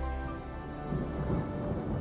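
Storm sound effects in a film soundtrack: rain with a low rumble of thunder. A held musical chord fades out at the very start.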